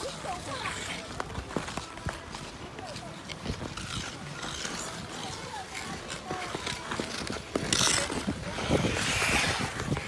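Ice skate blades scraping and gliding on ice, with two louder hissing scrapes near the end, over faint chatter of people's voices.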